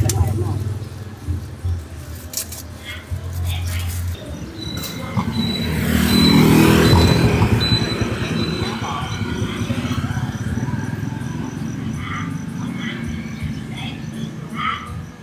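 A motorbike passes close by on the street, its engine swelling to the loudest point about halfway through and then fading, over a low steady hum of street traffic.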